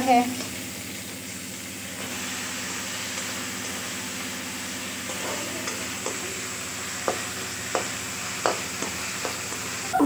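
Chopped tomatoes, onion and green chillies sizzling steadily in hot oil in a metal wok, stirred with a slotted spoon. The spoon scrapes and knocks against the pan about five times in the second half.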